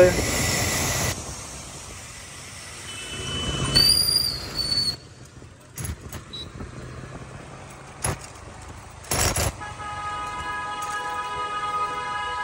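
Road traffic on a wet street: tyre and engine noise with vehicle horns sounding, a brief high-pitched one about four seconds in and a longer, steady one near the end.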